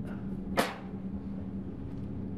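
The hinged plastic sample-compartment cover of a Shimadzu UV-1800 spectrophotometer shutting with a single sharp clunk about half a second in, over a steady low hum.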